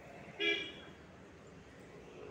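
A vehicle horn gives one short toot about half a second in, over faint street traffic noise.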